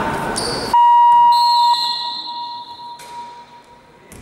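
Basketball scoreboard buzzer: a loud, steady electronic tone that starts abruptly about a second in, holds for about a second, then fades away over the next two seconds.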